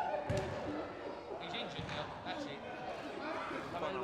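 Background chatter of children's and adults' voices, with a sharp thud about a third of a second in and a duller thud near two seconds.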